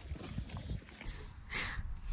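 Shoes scuffing and crunching on loose stone gravel while mud is worked off a mud-caked trainer, with small taps throughout and a brief louder scrape near the end.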